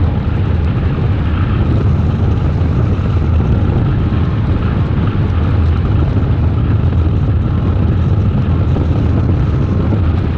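Wind rushing over a hang glider's wing-mounted action camera in flight: a loud, steady, buffeting rumble, strongest in the low end.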